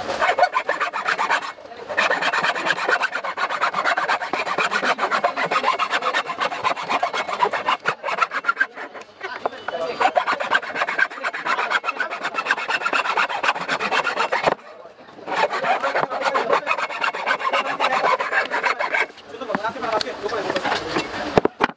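Hacksaw cutting across a cane cricket bat handle in quick, rasping strokes, with a few short pauses.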